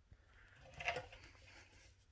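Faint handling noise around an opened vintage TV chassis: one brief scraping rustle about a second in, over low room tone.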